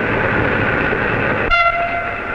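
Train noise, a dense rushing rumble, then a train whistle comes in sharply about one and a half seconds in and holds one steady tone.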